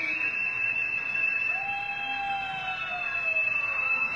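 A single very high, pure note held steady for about four seconds, closing the song's climbing final phrase. A fainter, lower line rises in the middle and slides down near the end.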